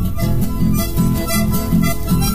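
Instrumental chamamé on accordion and bandoneón with guitar accompaniment: a sustained reed melody over a steady bass pulse of about four beats a second.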